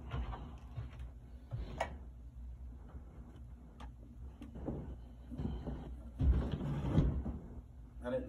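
Handling noise and light knocks as a phone is moved and set down on a shelf, then scattered knocks and rustling with a heavier thump about six seconds in.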